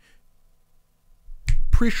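A single sharp finger snap about one and a half seconds in, after a short near-quiet pause.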